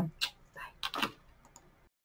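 A few short, light clicks and taps spread over about a second and a half, then the sound cuts off abruptly as the recording stops.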